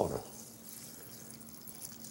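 Water pouring faintly and steadily from an aluminum pitcher into a skillet of tomato sauce, chopped eggplant and rice.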